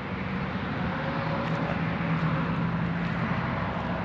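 Steady outdoor background noise with an even low hum underneath, of the vehicle-and-traffic kind.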